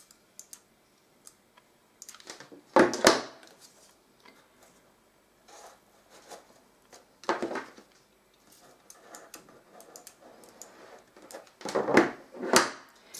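Corrugated cardboard strips being handled, fitted and pressed into place while being hot-glued: sparse light clicks and scrapes, with louder knocks about three seconds in, about seven seconds in and near the end.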